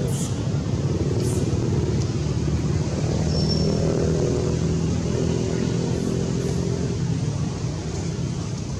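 A motor vehicle's engine running with a steady low hum, a little louder through the middle and easing off near the end.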